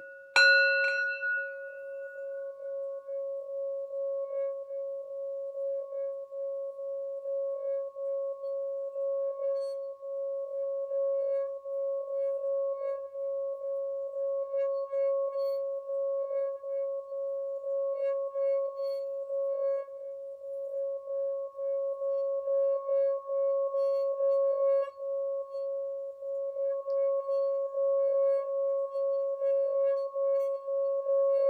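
Metal singing bowl struck once with a wooden mallet about half a second in, then sung by rubbing the mallet around its rim. The result is one steady, sustained hum that pulses evenly and swells slightly toward the end, with faint high ticks above it.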